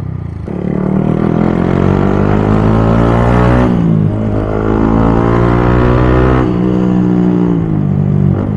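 Yamaha MT-15's 155 cc single-cylinder engine pulling through the gears from the rider's seat. The revs climb for about three seconds, drop sharply at an upshift, climb again, then fall away as the throttle eases near the end.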